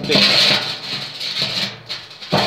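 Background guitar music under a loud rushing, scraping noise as a galvanised steel bin is handled and set down on fire bricks; the noise eases off near the end.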